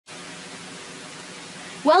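Steady, even hiss of a recording's background noise, with a voice starting to speak near the end.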